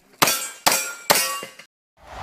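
Three sharp pistol shots about half a second apart, each with a metallic clang that rings briefly.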